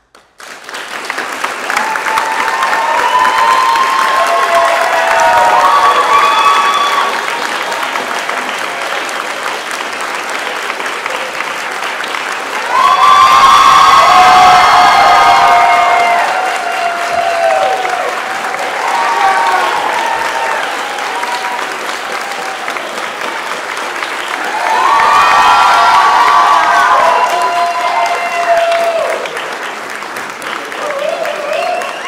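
Audience applause that breaks out suddenly from silence, with cheering and whoops from the crowd. It swells twice, about halfway through and again near the end.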